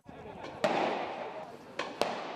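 Two explosions echoing through city streets. The first, about half a second in, is the loudest, with a long echo that fades away. The second is a sharper crack near the end.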